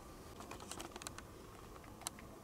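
Chess pieces being set down and nudged into place on the board: a quick run of faint, light clicks in the first second, then only room noise.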